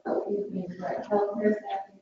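A person speaking indistinctly, away from the microphone: an attendee answering from across the room.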